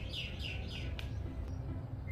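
A small bird chirping in a quick run of short, falling notes, about four a second, through the first second, over a steady low background rumble. There is one sharp click about a second in.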